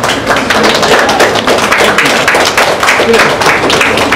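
A small group applauding: dense, irregular handclaps.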